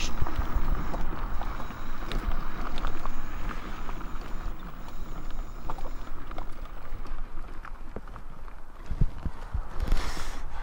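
Wind rumbling on the microphone, with irregular crunches and ticks such as gravel makes under a small electric scooter's knobby tyres.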